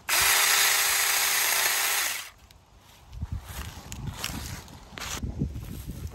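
Saker 4-inch cordless electric mini chainsaw running at a steady high whine for about two seconds, then switched off and spinning down. A few faint rustles and knocks follow.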